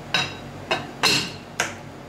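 A bowl set upside down over a serving dish, knocking and clinking against the dish's rim four times, each knock ringing briefly.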